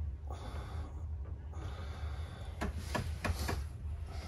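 Two breathy exhalations, then a few short crackles and rustles as a gauze compress is pulled off a cut on the shin. The compress has stuck to the wound, and pulling it off opens the cut again.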